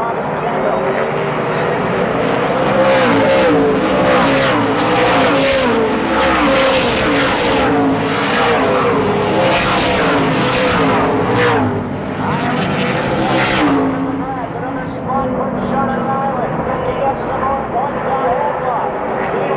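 A pack of late model stock cars passing at racing speed, their V8 engines overlapping and gliding up and down in pitch as they go by. The sound builds about two seconds in, stays loud through the pass, and eases off after about fourteen seconds.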